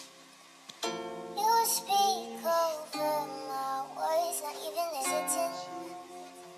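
Slowed-down acoustic song: a strummed guitar chord about a second in, then a sung vocal line over the ringing chords until near the end.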